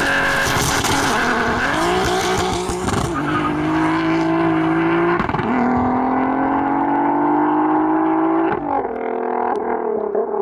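Turbocharged VW Golf IV R32's 3.2-litre VR6 engine accelerating away hard, its pitch climbing through the gears with upshifts about three, five and eight and a half seconds in.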